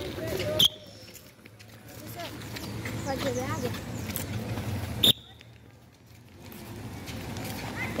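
Faint, indistinct children's voices over outdoor background noise, with two sharp clicks, one about half a second in and one about five seconds in.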